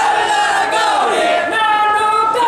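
A group of men shouting a slogan together into a microphone, loud, with long drawn-out syllables that fall in pitch.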